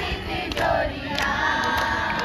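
Group of women and girls singing together in chorus, unaccompanied, with a long held note in the second half.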